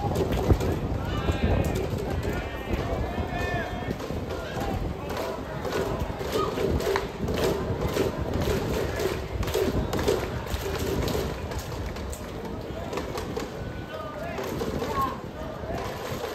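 Baseball stadium crowd: many spectators chattering indistinctly in the stands, with scattered sharp knocks and a louder one about half a second in.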